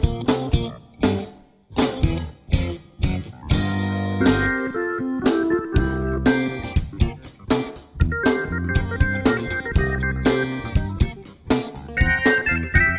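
Background music with a steady drum beat under sustained melodic notes.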